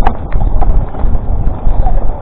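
Mountain bike riding down a dirt woodland trail: the bike rattles and knocks irregularly over roots and bumps, over a steady low wind rumble on the camera microphone.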